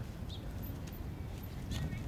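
A small child's shoes stepping on wooden dock boards, a few light knocks over a steady low rumble, with a few short high chirps.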